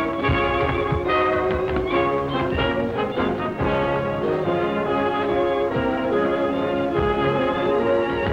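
A small dance orchestra with brass and fiddles plays a brisk tune, with the taps of a tap dancer's shoes on the floor mixed in.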